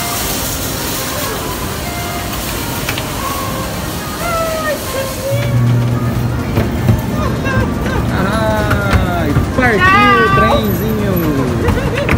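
Busy mall hubbub, then a low steady hum starts about five seconds in. From about eight seconds, high-pitched, swooping voices sound over it and grow louder toward the end.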